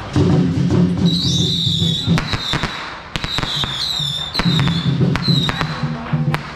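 Firecrackers popping in scattered sharp cracks through the middle, over procession drums and music that are strongest at the start and near the end. A high wavering whistle sounds above the cracks.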